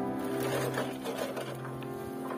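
A bicycle rattling with a rapid, fine clatter as it rides over a rough dirt track, under background music with steady held notes.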